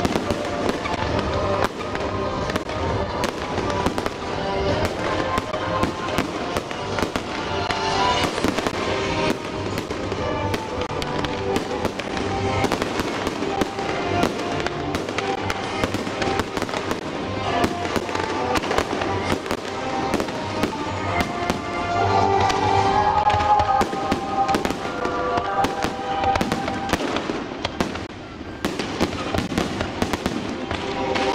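Fireworks display: a dense, continuous string of aerial shell bangs and crackling bursts, mixed with music playing throughout.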